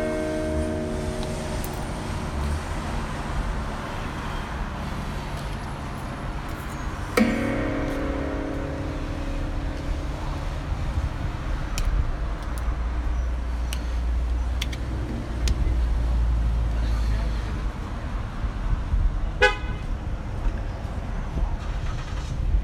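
Street traffic at an intersection: passing cars with a low rumble that swells in the second half. A sudden ringing note sounds about a third of the way in and fades, and a short pitched beep comes near the end.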